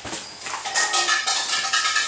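Foil pouch crinkling and rustling as it is handled and opened.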